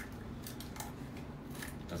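A few light, sharp clicks and snips from cut equisetum (snake grass) stems being handled and pinned together by hand.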